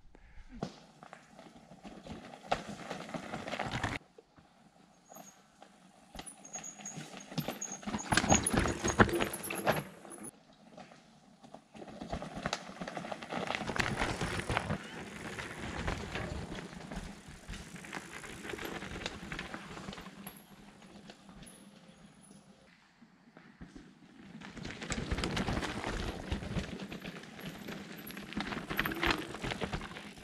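E-mountain bikes riding down a rough forest singletrack: tyres rolling over dirt, roots and stones, with irregular knocks and rattles from the bikes, in loud stretches that rise and fall as the ride goes on.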